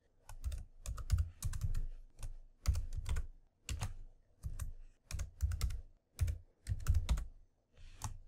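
Typing on a computer keyboard in irregular short bursts with brief pauses between them; each keystroke is a sharp click with a dull low thud.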